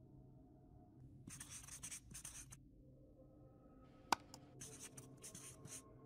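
Writing sound effect: a pen scratching out quick handwritten strokes. There is a run of strokes about a second in, a sharp click about four seconds in, then another run of strokes near the end. It is faint throughout.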